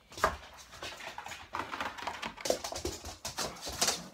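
A dog moving about close by, its paws and claws making a run of quick irregular taps and scuffles.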